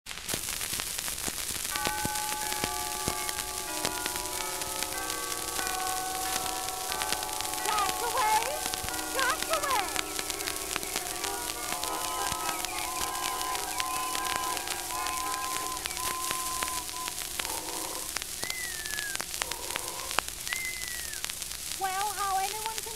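Music from an old phonograph recording: long held chords, with a few sliding pitches near the end, under steady crackle and hiss of surface noise.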